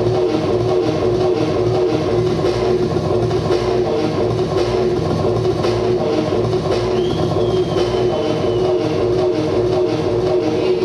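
Live electronic music played on a tabletop groovebox: a steady synth drone over a repeating low beat. A faint high tone comes in about seven seconds in and holds for a second or so.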